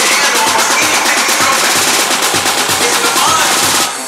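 Techno from a DJ mix: a steady kick drum about twice a second under a rapid, dense roll of percussion hits. Just before the end the kick and the roll drop out, leaving the synths.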